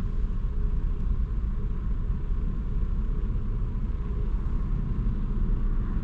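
Steady low rumble inside a car's cabin: the car is standing still with its engine idling.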